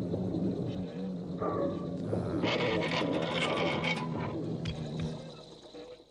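Pepelats spaceship takeoff-and-landing sound effect: a steady low mechanical hum, swelling into a louder hissing rush in the middle, then fading away near the end.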